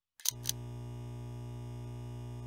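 Neon sign sound effect: two sharp clicks as the tube flickers on, then a steady low electrical hum.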